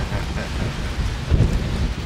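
Wind rumbling and buffeting on the microphone aboard a motor yacht under way, over a steady rushing hiss.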